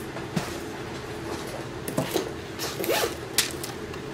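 Rummaging through diamond painting pens and supplies: scattered, irregular clicks, knocks and rustles of small items being picked up and moved.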